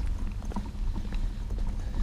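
Baby stroller wheels rolling over a paving-tile path: a steady low rumble with rapid, irregular clicks and clatter from the joints between the tiles.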